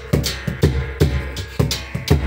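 A large rope-laced, pot-shaped drum beaten together with large metal hand cymbals, keeping a steady beat of about two strikes a second, each stroke a deep thud with a bright metallic clash on top.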